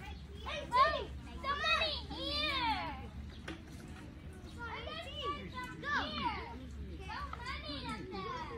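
Children's high-pitched voices calling out and chattering in two spells, the loudest cry about a second in, over a steady low rumble.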